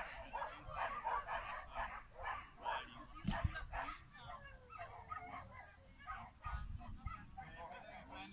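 A dog barking over and over in short, high-pitched calls, about three a second. A dull thump comes about three seconds in, and another low bump comes near the end.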